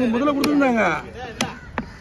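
Heavy cleaver chopping fish on a thick wooden chopping block, three sharp chops.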